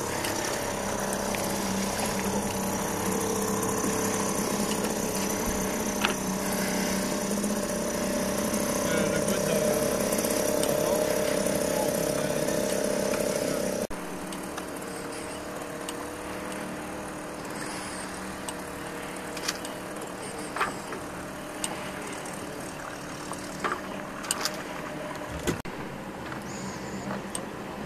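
Small Mercury outboard motor running steadily, pushing a heavily laden inflatable dinghy. About halfway the sound drops suddenly to a quieter, more distant hum, with a few light clicks.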